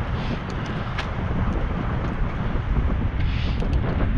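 Wind rumbling over an action camera's microphone on a moving bicycle, with road noise and a few light clicks.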